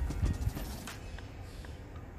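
Dry-erase marker knocking and sliding on a whiteboard as short strokes are written: a few sharp taps in the first half second, then fainter.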